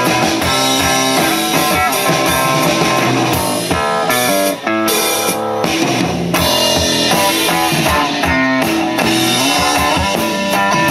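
Two-piece band playing loud rock live: an amplified acoustic-electric guitar and a drum kit, with a brief drop in volume about halfway through.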